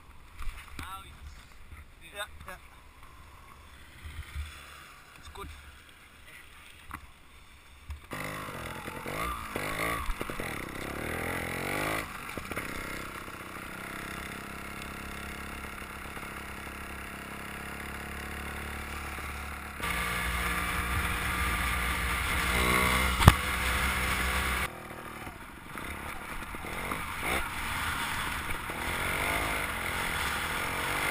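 Trials motorcycle engine heard from the rider's helmet camera. For about eight seconds there are only low handling noises and small clicks, then the engine comes in running steadily and grows louder as the bike rides on, with one sharp knock about two-thirds of the way through.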